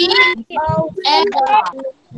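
Young children's voices reading aloud together in a sing-song chant, in short phrases with brief breaks.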